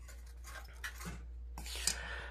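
Faint rubbing and rustling of a hand handling the phone that is filming, with a few soft clicks and a brief brighter scrape near the end, over a low steady hum.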